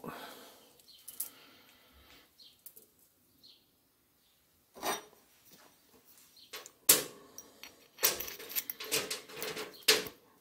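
Loose steel saw chain clinking and rattling as it is handled and untangled, its links knocking against each other and the workbench. The clinks are scattered, quiet for a stretch in the middle, and busiest near the end.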